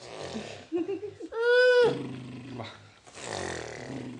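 A young child's voice: one loud, high, held call lasting about half a second, about a second and a half in.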